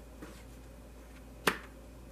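A single sharp snap of a tarot card as it is drawn from the deck and dealt onto the spread, about one and a half seconds in, after a fainter tick near the start.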